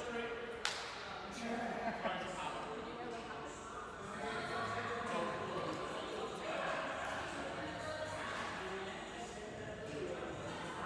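Indistinct voices echoing in a large gym hall, with a sharp knock about two-thirds of a second in and a few lighter knocks soon after.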